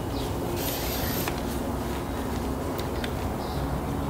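Steady low outdoor background hum with a few faint clicks and rustles as a folding camp chair's pole frame and fabric are handled.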